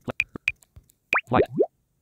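Short electronic sound effects from a phone's alarm app: a quick run of sharp clicks, then a few rapid upward-gliding plops, like bubbles popping, just after the middle.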